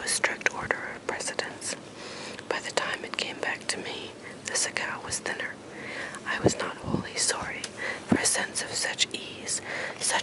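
Whispered speech: a person reading a book aloud in a steady whisper with crisp s-sounds.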